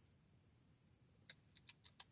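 Faint typing on a computer keyboard: a quick run of about five key clicks that starts a little past halfway.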